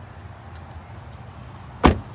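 The rear passenger door of a 2015 Nissan Pathfinder is swung shut, closing with a single solid thunk near the end.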